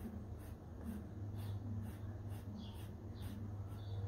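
Cotton swab rubbing back and forth over the cracked, varnished surface of an old painted canvas, lifting off the old varnish. It makes faint, scratchy strokes at about two a second.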